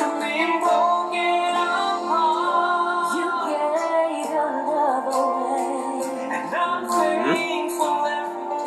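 A man and a woman singing a ballad duet with instrumental backing.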